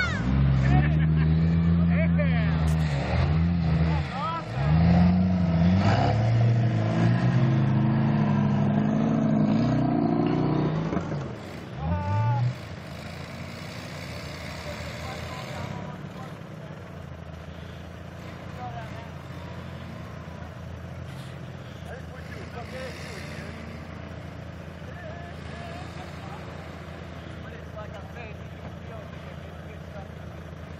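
Off-road vehicle's engine revving hard in deep snow, its pitch rising and falling again and again for about twelve seconds, then dropping back to a quieter, steady running for the rest.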